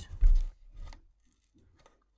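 A low thump about a quarter second in, then a few faint scratches and clicks of fingers handling a worn door weatherstrip along the door's bottom edge.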